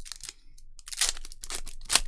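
A foil-wrapped Magic: The Gathering draft booster pack being torn open: the crinkly wrapper rips in a few quick tears, the loudest near the end.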